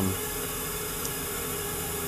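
Steady background hiss with a faint steady hum under it.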